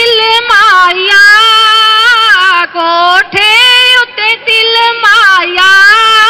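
A high female voice singing a Punjabi wedding song in long held notes that bend and slide in pitch, with short breaks between phrases.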